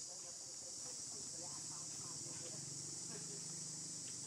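Insects droning in a steady, unbroken high-pitched buzz, with faint distant voices underneath.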